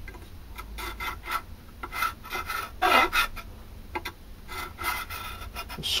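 Hardened steel divider point scratching a scribe line through permanent marker into a mild steel plate: a run of short, irregular scratching strokes.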